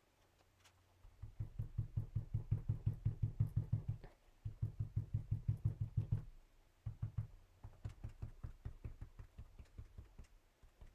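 Quick, even rubbing strokes of a small applicator on card stock, about six a second, in three runs with short breaks about four and six and a half seconds in, as dark shading is worked into the base of the scene.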